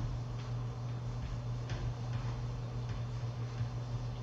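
Dry-erase marker stroking and tapping on a whiteboard in a few short, faint scrapes, over a steady low hum.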